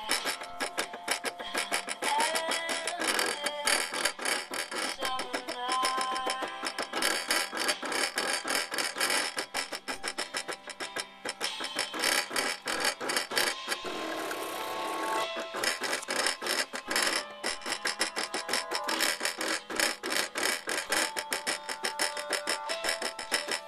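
Music with guitar playing, in a steady rhythm with a changing melody.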